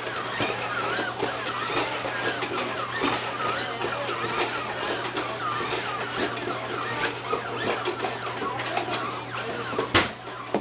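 Toy humanoid robot walking: its small gear motors whir in short bursts of rising and falling pitch over a steady low hum, with frequent sharp mechanical clicks.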